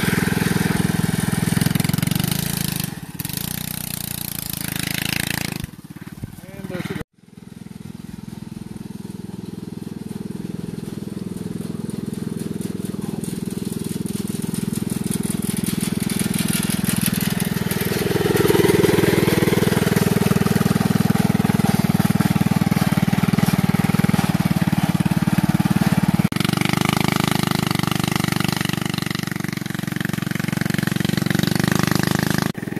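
Go-kart's small single-cylinder engine running while it pulls branches with a tow strap. The sound drops away briefly about seven seconds in, then grows louder and holds at a steady high level.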